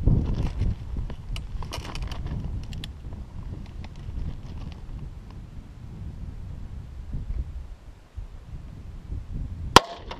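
A single sharp, loud gunshot near the end from a Ruger revolver firing a 130-grain full-metal-jacket .38 Special round. Before it, in the first few seconds, come rustling and small clicks of handling.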